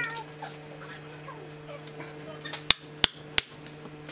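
Three sharp hammer blows on a hand chisel held against red-hot steel on an anvil, about a third of a second apart, in the second half, over a steady low hum.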